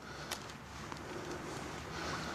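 Faint background noise with two light knocks, about a third of a second in and again just before a second in.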